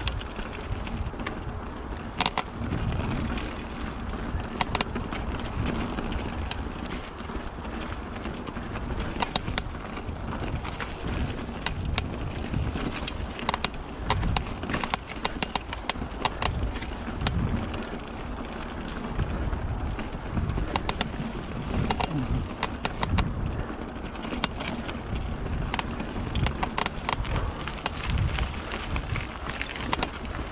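Mountain bike riding fast down a forest singletrack: knobby tyres rolling over dirt, roots and stones with a continuous low rumble, and the bike rattling in many short sharp clicks as it goes over the bumps. A couple of brief high squeaks come about eleven seconds in and again near twenty.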